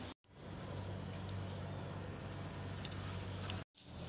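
Quiet rural outdoor ambience: faint steady insect sound over a low, even hum, broken by two brief dropouts to silence, one a fraction of a second in and one near the end.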